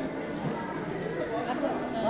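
Indistinct chatter of shoppers' voices, with overlapping talk growing a little clearer in the second half.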